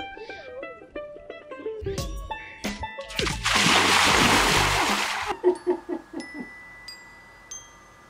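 A loud rush of splashing lasting about two seconds, a little over three seconds in, as a man runs into shallow sea water. Light background music of short struck notes plays before and after it.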